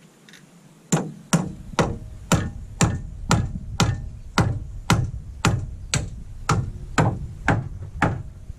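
Steady hammer blows on wooden roof timber, about two strikes a second, starting about a second in, each a sharp knock with a short ring.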